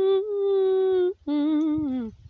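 A woman humming with closed lips: one long held note, then, after a short break, a lower note that wavers and slides down near the end.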